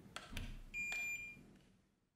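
BENTSAI HH6105B2 handheld inkjet printer giving one steady high beep, about three quarters of a second long, as it powers up. Before it come a few light clicks from the power button being pressed and the unit being handled.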